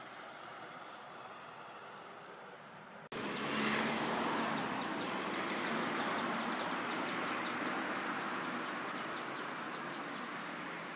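Steady hum of road traffic, then an abrupt cut about three seconds in to louder street ambience: a car passing, and small birds chirping over and over.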